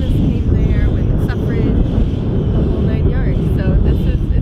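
Strong wind gusting across the camera microphone: a loud, continuous low rumble, with voices partly heard over it.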